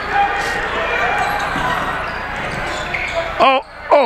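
A basketball being dribbled on a hardwood gym floor during a fast break, over the steady noise of the crowd in the gym.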